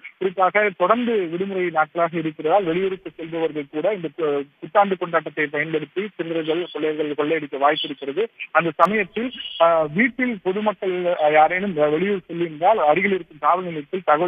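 Speech only: a man talking over a telephone line, his voice thin and cut off above the phone band.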